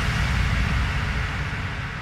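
Noise sweep from an electronic dance track, a hissing wash with a low rumble under it, fading out steadily as the track ends.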